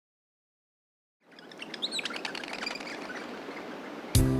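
About a second of silence, then birds chirping over a soft outdoor background hiss that fades in.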